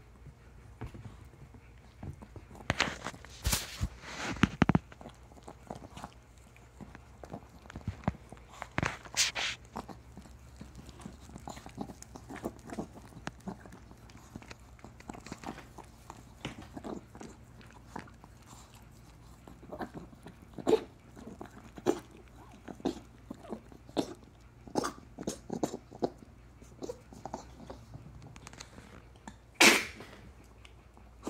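Small dog licking a person's face in short, irregular strokes, with a few louder clusters of licks and the loudest just before the end.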